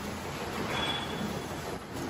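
Automatic paper cup lid forming machine running, a steady mechanical noise with a low pulse about every two-thirds of a second as it cycles. A brief high-pitched squeal comes in about a second in.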